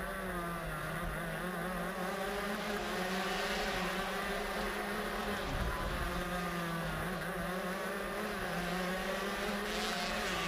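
Onboard sound of a Honda CR125 two-stroke stock moto kart engine running at race pace, its buzzing note rising and falling through the corners, with a short break in the note about halfway through.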